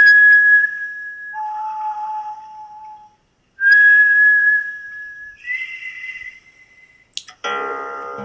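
A person whistling a few steady held notes at different pitches, each an almost pure single-frequency tone, with a short break about three seconds in. Near the end a guitar string is plucked and rings on with many overtones.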